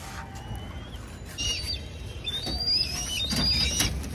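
Several birds chirping in short, high, overlapping calls that start about a second and a half in and grow busier, over a low steady rumble.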